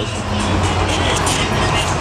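Steady low drone of a fishing boat's engine running, with background music over it.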